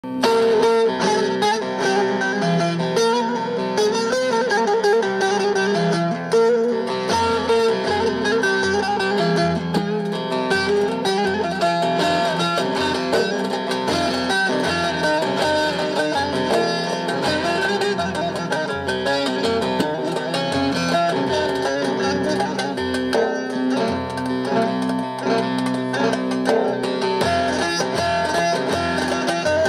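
Long-necked bağlama (Turkish saz) playing an instrumental introduction, a quick run of plucked notes. About seven seconds in, a low pulse joins, repeating somewhat under twice a second.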